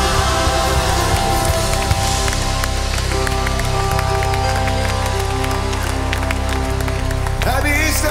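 Worship band holding a long sustained chord over a low bass note as a song ends, with scattered clapping from the congregation. A voice starts speaking near the end.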